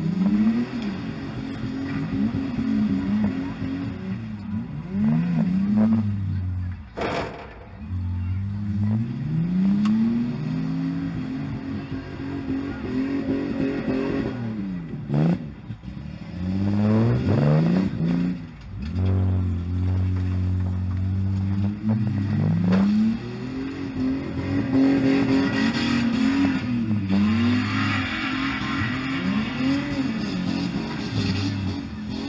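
Car engines revving up and falling back over and over, several overlapping at different pitches.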